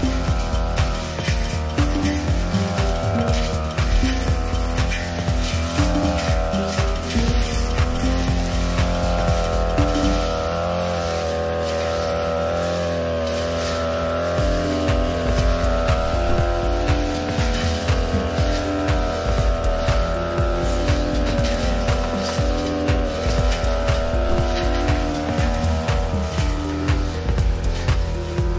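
A brush cutter's engine runs at high speed, its pitch wavering as the 45 cm metal blade cuts through young grass. Background music with a steady beat plays over it.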